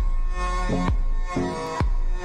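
Electronic music without vocals: a deep kick drum that drops in pitch, hitting about once a second over sustained synth chords and a steady bass.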